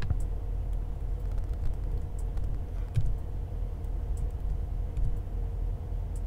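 Steady low background rumble and hum, with a few scattered computer keyboard key clicks as terminal commands are typed and run.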